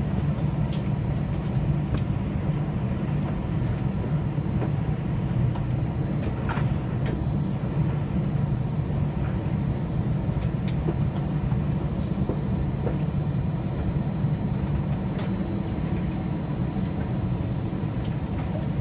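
Cabin noise of an Airbus A321-200 taxiing slowly: a steady low rumble with faint steady high tones above it and a few light clicks.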